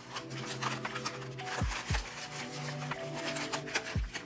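Background music with steady held notes, over the rustle and crinkle of pattern paper being handled and taped down, with a couple of soft thumps a little past halfway.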